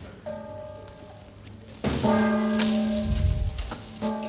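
Stage gong struck for the three gong strokes that announce the start of a play: a soft ringing stroke just after the start, a louder one with a deep thud about two seconds in, and the third at the very end. A rain sound effect hisses along with the second stroke.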